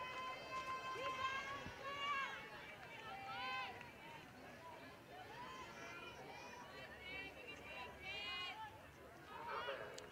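Faint, distant high-pitched voices of softball players and fans shouting and chanting, with long drawn-out calls, over the low murmur of an outdoor ballpark.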